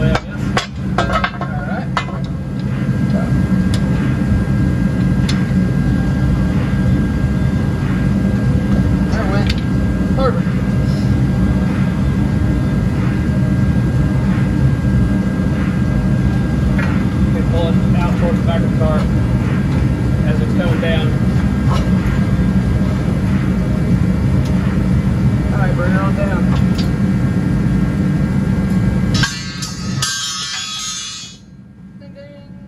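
A steady low mechanical hum, like a motor running, with faint voices now and then; it cuts off suddenly shortly before the end.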